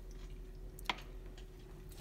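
A single brief light click or plop about a second in as a small plastic toy tube is dropped into a plastic bowl of water. Otherwise faint room tone.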